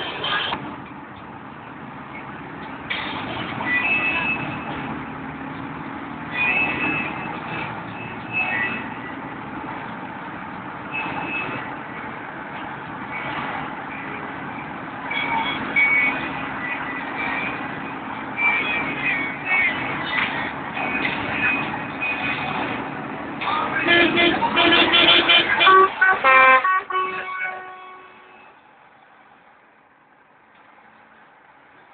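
Vintage trucks running, with intermittent horn toots; a loud burst of several horn notes about 24 seconds in, after which the sound fades away.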